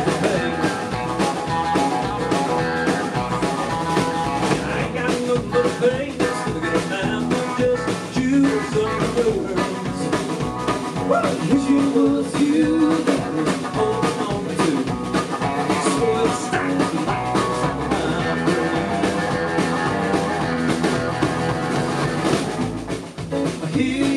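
Live rock band playing: strummed acoustic guitar, electric guitar, bass guitar and drum kit, with no lyrics in this passage.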